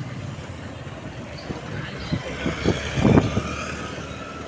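City road traffic heard from among it while moving: a steady engine and road rumble, with a louder rush of noise about three seconds in.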